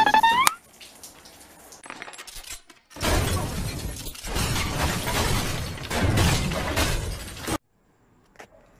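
Loud, noisy crashing, like things smashing and breaking, that runs for about four and a half seconds from about three seconds in and then cuts off abruptly.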